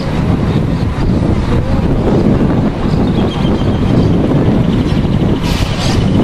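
Wind buffeting the microphone: a loud, steady low rumble, with a brief brighter rush about five and a half seconds in.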